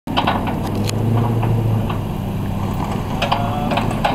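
Hummer H2's V8 idling steadily, with several sharp metallic clinks as a tow chain is handled at its front.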